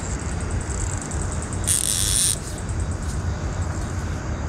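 Fishing reel's drag buzzing briefly as a hooked fish pulls line, a little under two seconds in, over a steady low rumble.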